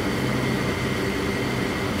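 Air conditioner running indoors: a steady low hum with a faint, steady high whine above it.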